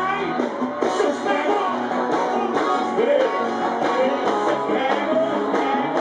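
Live sertanejo band music played loud over a concert sound system: strummed guitar and a sung melody over a steady beat.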